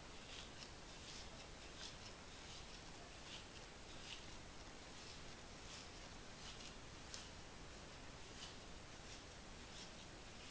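Faint, irregular scratchy rustles of a hair pick and fingers working through coily twist-out hair at the roots, over a steady background hiss.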